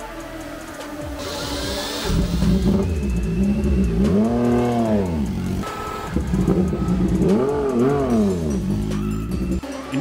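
Moto2 race bike's Triumph 765 cc three-cylinder engine catching about two seconds in, then running and revved twice, each rev rising and falling in pitch, before cutting off near the end.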